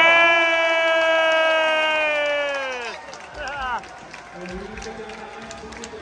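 A ring announcer's voice over the stadium loudspeakers, holding one long drawn-out call for about three seconds as the winner is declared. The call is followed by quieter crowd noise and cheering.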